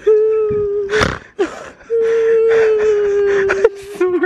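A young girl crying in two long, level-pitched wails, with a sharp gasping breath between them about a second in; she is hurt from a fall off her pony.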